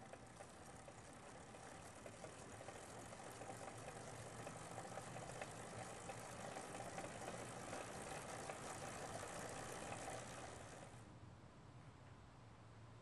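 Bicycle wheels and drive shaft of a pedal-powered tennis ball launcher spinning: a steady mechanical whir with dense rapid ticking. It grows louder over several seconds and falls away near the end.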